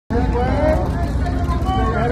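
Photographers' voices calling out over one another, with no clear words, above a steady low rumble.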